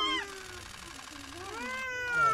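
A young child crying: a short wail at the start, then a longer wail near the end that rises and slowly falls.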